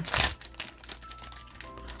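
A plastic cello-wrap trading-card pack crinkling briefly near the start as it is handled, over soft background music.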